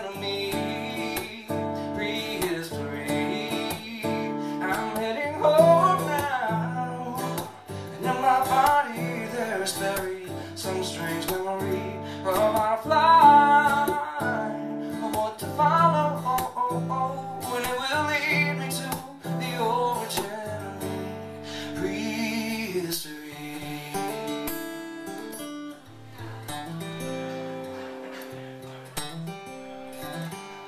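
Live solo acoustic guitar, strummed and picked, with a man singing over it. Near the end the voice stops and the guitar plays on alone.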